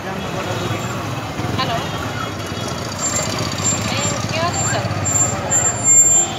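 Busy market-street ambience: overlapping voices of passers-by over the steady running of motor scooters and motorcycles moving through the street, with a brief louder sound near the end.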